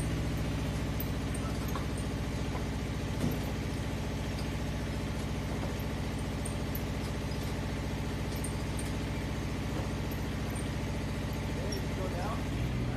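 SPT299 spider crane's engine running at a steady speed while the crane holds a load, with one brief knock about three seconds in.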